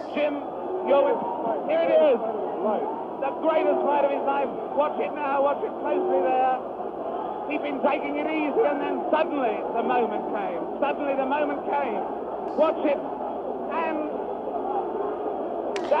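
Crowd uproar: many voices shouting and talking over each other, in old broadcast audio with a narrow, muffled range.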